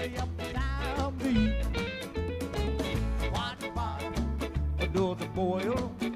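Live acoustic ska band playing: upright bass, congas and drum kit, acoustic and electric guitars, and violin. An upright bass line moves in distinct notes about twice a second under steady percussion strokes, with a wavering melody line above.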